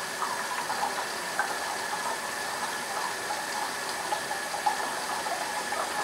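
Double-edged safety razor scraping through lathered three-day stubble, with faint irregular scratches, over the steady hiss of a running hot-water tap.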